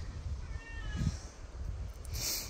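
A cat meowing faintly, once, about half a second in.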